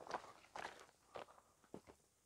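Faint footsteps on sandy, pebbly ground, four steps about half a second apart.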